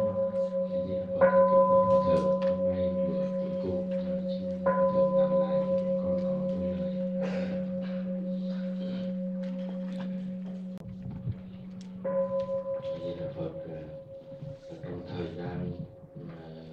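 A Buddhist temple bell struck three times, each strike ringing on and dying away slowly with a wavering, beating tone, over a low steady hum.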